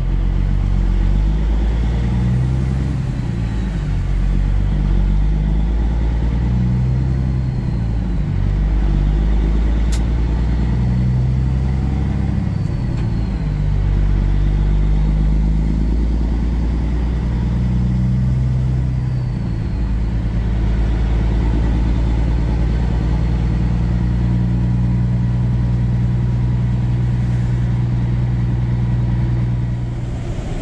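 Semi truck's diesel engine pulling through town at low speed, its low note holding steady and then stepping to a new pitch every few seconds as the truck shifts and changes speed. A single sharp click about ten seconds in.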